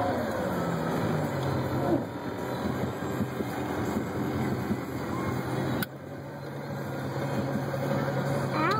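Motorboat engine idling just after starting, its pitch dropping over the first second or so as the revs settle, then running steadily. A sharp click about six seconds in.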